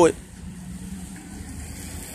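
A low steady hum, like a running motor.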